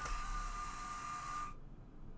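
A steady hiss with a faint, thin high whine that cuts off suddenly about one and a half seconds in, leaving quiet room tone.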